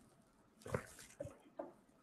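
A person sipping coffee and swallowing, faintly: one sip a little under a second in, then two short swallows.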